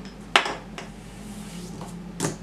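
Hard plastic knock-off Duplo-style toy blocks clacking on a table: one sharp clack about a third of a second in, then a few faint ticks.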